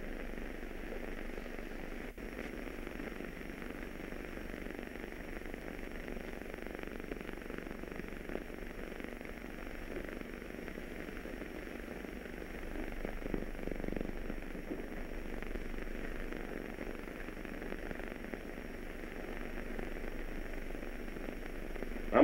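Steady hiss and crackle of an old optical film soundtrack with a low hum under it, and one sharp click about two seconds in.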